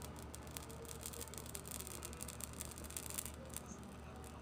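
A bay laurel leaf burning in an open flame, giving faint, rapid crackles and ticks that come thickest in the middle, over a low steady hum.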